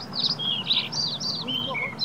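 A bird singing: a quick run of short, varied chirping notes, many sweeping downward in pitch.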